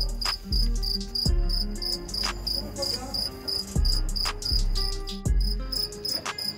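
A cricket chirping steadily, about two or three chirps a second, with several dull low thumps.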